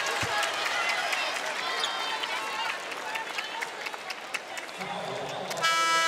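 Arena crowd murmur during a stoppage in play after a foul. Near the end an arena horn sounds: a steady buzzing tone that starts suddenly.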